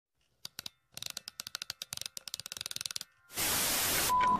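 Electronic crackle: a quickening run of sharp clicks, then a short gap and a steady TV-static hiss from about three and a quarter seconds in, a glitch-and-static transition effect.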